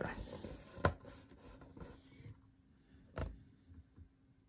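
Cardboard packaging being handled as the box lid is lifted: soft rubbing and sliding of card, with a sharp tap about a second in and a louder knock a little after three seconds.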